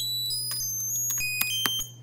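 Computer-generated melody from a Max patch: short, high-pitched electronic tones, each starting with a click, about three notes a second. The notes are picked at random from a harmonic minor scale and jump octave on every beat. A steady low hum runs underneath.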